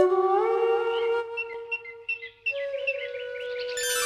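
Cartoon magic sound effect: a held, theremin-like tone that glides up in pitch, a run of short twinkling chime notes in the middle, and a shimmering rise near the end, as a glowing light appears.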